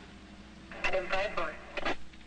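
Brief, thin-sounding speech over a car's two-way radio, starting about a third of the way in.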